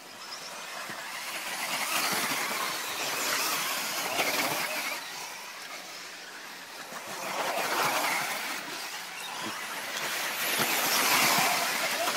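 Several 1:10-scale 4WD electric off-road RC buggies racing, their motors and drivetrains making a high whine with tyres scrabbling on dirt. The sound swells and fades about three times as the cars pass close by.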